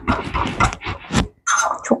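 A person sniffing in short, quick breaths, about three a second, smelling boiled pumpkin as it is mashed.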